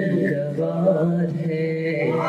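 A man's voice singing a naat into a microphone, drawing out a long wordless note that wavers and bends in pitch.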